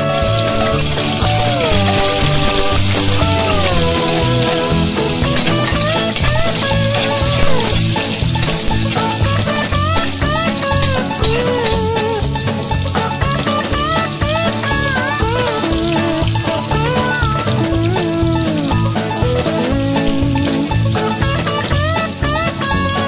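Chopped garlic sizzling in hot oil in a wok: a steady hiss that starts suddenly as it hits the oil, while a metal spatula stirs it. Background music with a melody and a steady beat plays over it.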